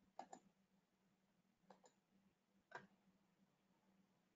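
Near silence with a few faint computer mouse clicks: a quick pair just after the start, then single clicks about a second and a half and nearly three seconds in, over a faint steady low hum.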